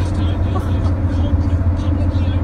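Steady low drone of road and engine noise inside a moving car's cabin.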